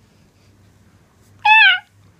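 A single short, high-pitched meow-like call about one and a half seconds in, falling in pitch at the end.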